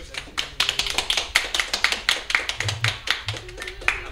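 A small group clapping: rapid, irregular hand claps that run for about four seconds and stop just before the end.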